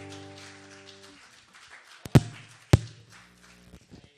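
The last strummed chord of an acoustic guitar dying away and cut off about a second in, followed by two loud thumps about half a second apart, a little past two seconds in.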